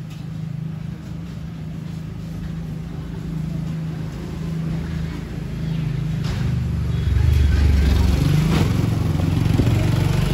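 An engine running steadily with a low hum, growing louder from about seven seconds in.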